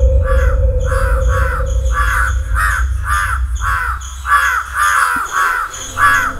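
Birds cawing over and over, short harsh calls about twice a second, over a steady low rumble.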